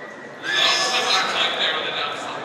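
Foal whinnying: one loud, shrill, wavering call that starts about half a second in and lasts about a second and a half.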